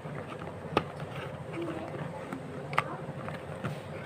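A small cardboard box being opened by hand: quiet rustling and handling of the card, with two sharp clicks about two seconds apart.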